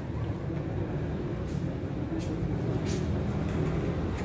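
Steady low rumble of ambient background noise, with three brief soft hissing sounds about a second and a half, two and a quarter and three seconds in.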